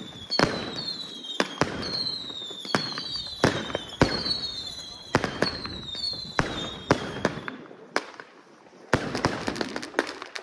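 Fireworks firing shot after shot, each a sharp bang with a short falling whistle, about one and a half a second. The whistling shots stop about seven and a half seconds in, and after a short lull a dense run of crackling bangs starts.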